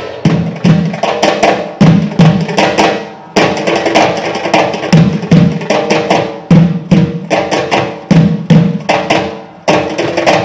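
An ensemble of Egyptian tablas (darbuka goblet drums) playing a fast rhythm together. Deep, resonant dum strokes mix with sharp, high tak strokes. There are two brief breaks, a few seconds in and near the end.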